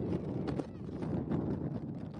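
Open-air ambience from a football pitch: wind on the microphone, a run of irregular short knocks and clicks, and faint players' voices.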